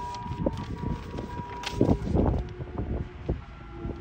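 Gusts of wind buffeting an outdoor phone microphone, strongest about two seconds in, under soft background music of long held notes.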